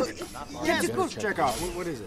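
Voices talking, with a brief high hiss in the second half.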